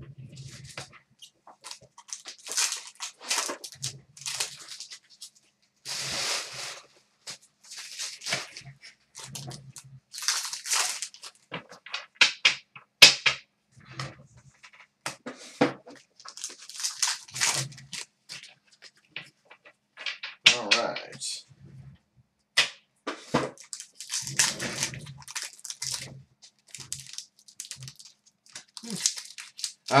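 Hockey card packs being torn open and stacks of cards handled and flicked through: an irregular run of short papery rustles and crinkles, with a few sharp snaps.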